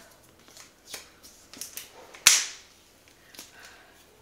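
Handling of a cardboard laptop box: faint rustles and light taps, then one sharp crack a little past halfway through, the loudest sound.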